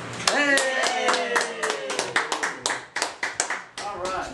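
A small group clapping, with voices cheering on a long falling pitch over the first half. The claps start about a third of a second in, come several to the second, and stop just before the end.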